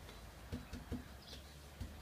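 A few soft, low knocks of a paintbrush being dipped into and tapped against a plastic paint kettle while loading undercoat.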